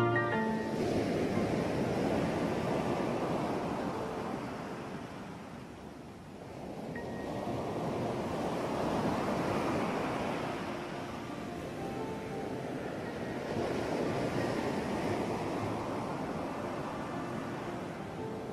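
Ocean surf breaking on a shore, the rush of the waves swelling and falling back about every five to six seconds, three surges in all, with faint music underneath.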